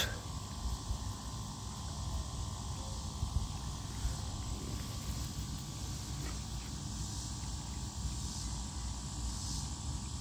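Quiet outdoor ambience: a steady low rumble with a faint, steady high insect drone and a few small clicks.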